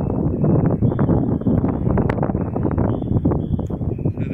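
Wind buffeting the microphone: a loud, rough, uneven rumble in the low range.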